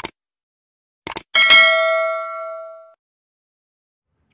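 Sound effect of a subscribe-button animation: a click, a quick double click about a second in, then a bright bell ding that rings out for about a second and a half.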